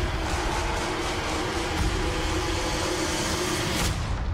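Movie-trailer soundtrack: dense music with a held low note over a heavy rumble of sound effects, which breaks off suddenly at the end and leaves a fading echo.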